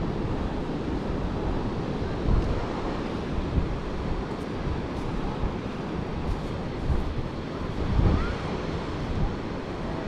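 Ocean surf washing steadily, with wind buffeting the microphone in irregular low gusts.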